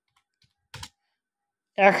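Two quick computer-keyboard keystrokes about three-quarters of a second in, as text is typed, followed near the end by a man saying a word.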